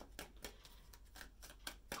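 Faint, scattered clicks and taps of tarot cards being handled, over a low room hum.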